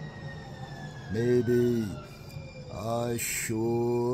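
A man's voice singing three slow, long-held notes of a ballad. Beneath the first two seconds a faint thin tone glides slowly downward in pitch.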